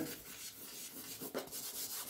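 Faint scratching and rubbing of a thick stick of charcoal drawn across paper.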